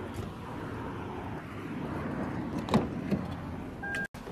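Steady motor-vehicle noise at a roadside, a car running or traffic going by, with two faint short clicks near the end.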